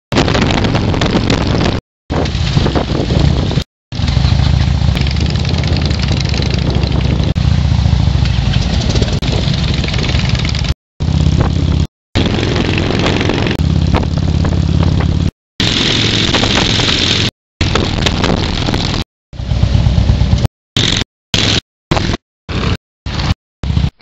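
Motorcycle engine running with wind rushing over the microphone while riding, a loud, steady rumble and rush. It is chopped into many short pieces by abrupt cuts, which come quicker and closer together near the end.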